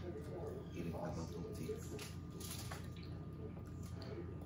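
Soft eating sounds at a table: chewing and small wet clicks as hands pick meat off a roasted pig's head, over a faint murmur of voices and a steady low room hum.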